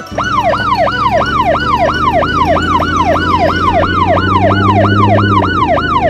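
Police siren sounding a fast yelp, its pitch swooping up and down about three times a second, over a steady low hum that stops about five and a half seconds in.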